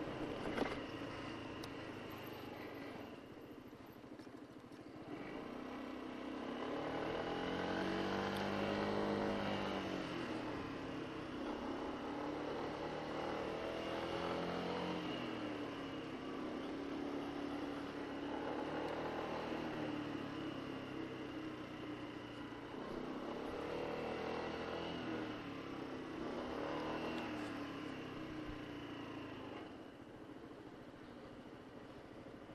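Honda SH150i scooter's single-cylinder four-stroke engine running under way, its pitch rising as it speeds up and falling as it slows, twice, over wind and tyre noise. A short sharp knock sounds just after the start.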